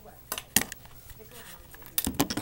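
Handling noise of a Flip Ultra camcorder being moved and set in place: a few sharp knocks and clicks about half a second in and again at the end.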